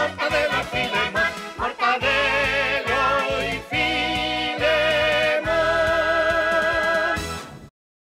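Closing theme song of the cartoon series, ending on long held notes with a quick vibrato. It cuts off abruptly shortly before the end.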